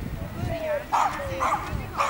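Small dog yipping: short high barks about half a second apart, about a second in and again at the end, with a thin whine before and between them.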